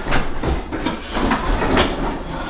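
Several pry bars levering up old strip hardwood flooring: an irregular clatter of wooden boards knocking, cracking and dropping onto one another.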